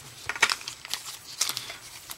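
Foil-wrapped trading-card booster packs and their plastic packaging crinkling in the hands, with a few sharp crackles in small clusters.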